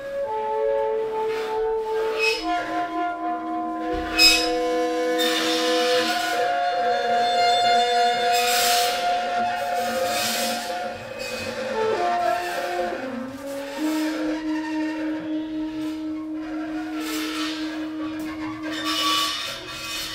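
Free-improvised jazz from a trio of alto saxophone, double bass and drums. Long held tones overlap and shift in pitch in steps, with cymbal washes above them.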